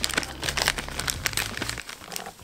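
A small clear plastic bag crinkling as it is handled, a rapid run of light crackles.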